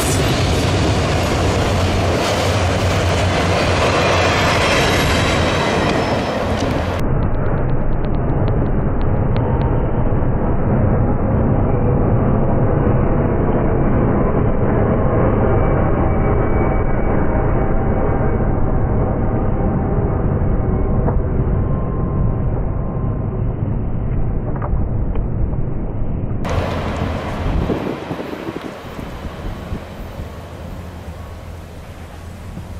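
Freight train cars rolling past, a loud steady rumble of steel wheels on rail that eases off near the end.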